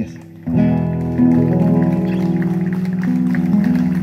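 Acoustic guitars playing a short instrumental passage of held chords, coming in about half a second in after a brief drop in sound.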